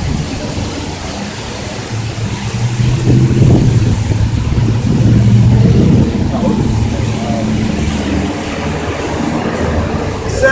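A low engine rumble that swells a couple of seconds in, is loudest for a few seconds, then eases off.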